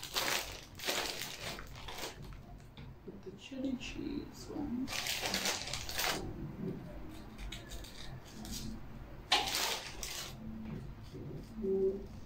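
Crinkly foil snack packet rustling in three short bursts as a hand reaches in and pulls out Nik Naks maize puffs, with a low mumbling voice between the bursts.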